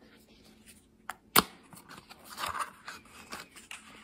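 A small product box and its insert being handled and opened by hand: two sharp clicks about a second in, then soft rustling and light tapping of the packaging.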